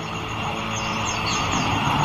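Ambient drone from the background music bed: a steady, rumbling, noisy wash with a few thin high tones, growing gradually louder.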